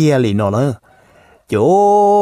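A man's voice speaking, then after a short pause a long drawn-out vowel held at one steady pitch.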